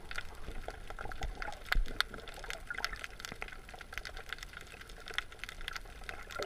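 Seawater heard underwater through a GoPro camera's housing: water moving and bubbling, with a constant scatter of small crackling clicks and one louder bump just under two seconds in.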